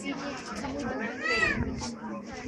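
Young children's voices, with one high child's voice rising and falling in pitch about a second and a half in.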